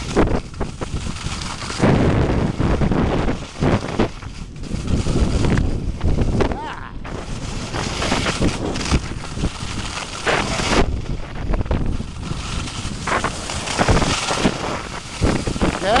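Wind rushing over the microphone of a camera carried by a skier moving fast downhill, mixed with the hiss and scrape of skis carving on packed snow. The noise swells and drops unevenly.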